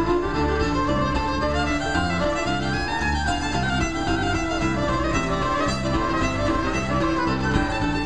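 Live bluegrass instrumental break: a fiddle playing the lead melody over an acoustic guitar keeping a steady rhythm of alternating bass notes and strums.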